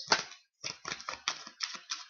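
Tarot cards from Ciro Marchetti's Gilded Tarot deck being shuffled by hand: a quick run of soft card slaps and clicks, several a second.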